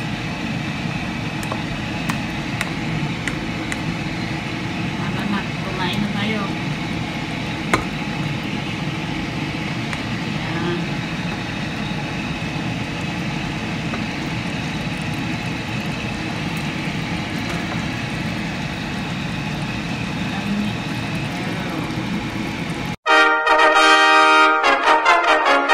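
Steady background noise with faint voices in the distance. About a second before the end it cuts to a loud brass fanfare.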